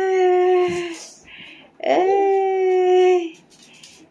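Toy poodle howling: two long howls, each sliding up at the start and then held on one level pitch for about a second and a half, with a short pause between them.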